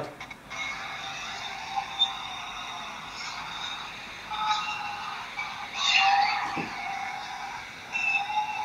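Shouting and screaming heard over a phone call through the phone's loudspeaker, thin and tinny, swelling louder about four and six seconds in.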